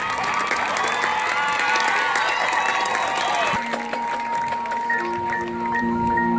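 Stadium crowd cheering and applauding a marching band. About three and a half seconds in, a held chord starts suddenly, and near the end the front ensemble's mallet percussion begins an evenly repeated pattern of short notes.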